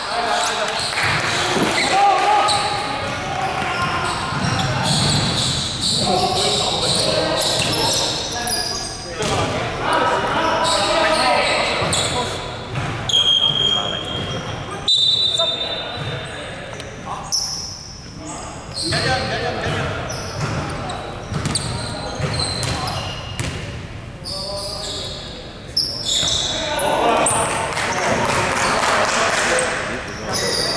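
Basketball game sounds echoing in a large gym: a ball bouncing on the wooden court among players' voices and calls.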